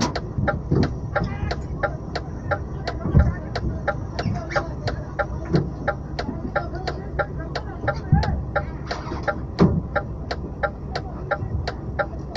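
Steady rapid ticking, about three clicks a second, from a stationary truck's indicator or hazard-light relay in the cab, over the low rumble of the idling engine, with a few dull thumps.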